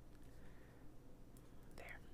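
Faint scratching of a fine-tip pen drawing on paper, close to silence.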